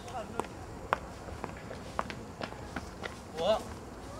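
Footsteps of boots on a paved path, sharp steps about two a second. A short call that rises and falls comes near the end.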